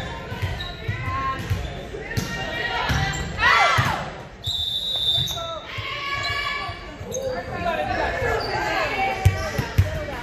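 Volleyball players and spectators shouting and cheering in a gym, with a loud shout about three and a half seconds in. A referee's whistle blows once for about a second at the end of the rally. Near the end a volleyball bounces several times on the hardwood floor.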